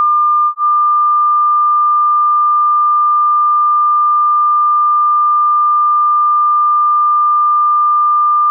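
A single steady, high-pitched electronic sine tone with a momentary break about half a second in. It is a test tone for hearing two-source interference: moving the head makes it grow louder and weaker as the ears pass through antinodes and nodes.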